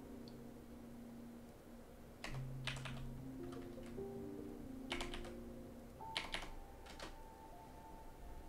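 A handful of computer keystrokes in short clusters while coordinates are typed in, over faint background music of long held notes.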